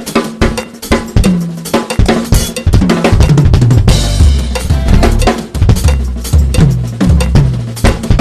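Acoustic drum kit played in fast, dense patterns of snare, tom, kick and cymbal strokes, with a cymbal crash about halfway through.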